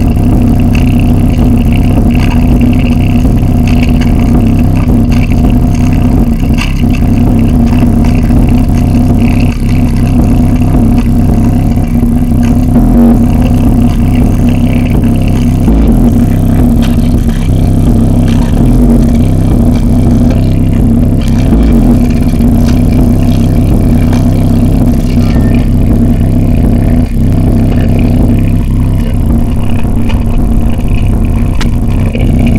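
A woofer in a wooden cabinet playing a heavily distorted bass track at high volume, its cone moving hard. The sound is loud and dense with no breaks, dominated by low bass with a strong steady low tone.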